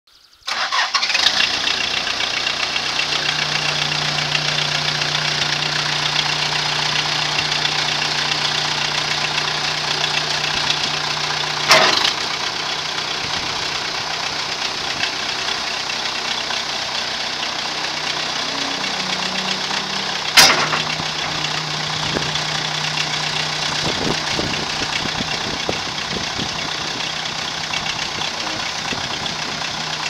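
Case 580C loader backhoe engine running steadily as the front loader lifts and tilts its bucket. A steady low hum sits over the engine for the first dozen seconds and again near the end, and there are two sharp knocks, about 12 and 20 seconds in.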